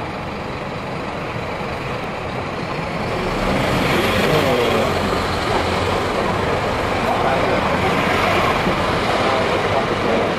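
Busy restaurant din: a steady rumble of noise with indistinct voices chattering in the background, growing louder about three seconds in.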